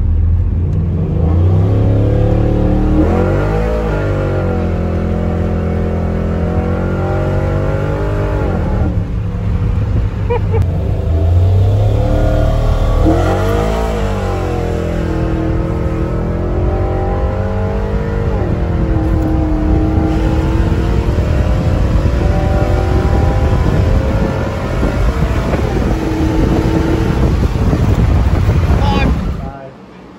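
Pickup truck engine heard from inside the cab, rising and falling in pitch twice as it accelerates and eases off, over a steady road rumble. The sound drops away just before the end.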